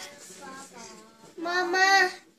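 A young child's high voice in a wordless, sing-song vocalisation: a soft stretch, then a loud, held call about one and a half seconds in.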